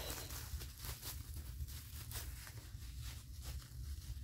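Plastic packing wrap rustling and crinkling as a wrapped item is handled and unwrapped, a steady run of small crackles.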